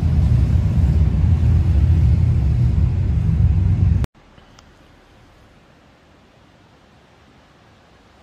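Motorcycle engine running loud and deep as it rides along the street, cut off abruptly about four seconds in; after that only faint outdoor background hush.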